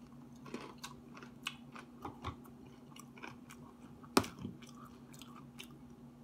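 Close-up chewing of a breaded fried strip, with scattered small crunches and wet mouth clicks. A single sharp, louder click comes about four seconds in.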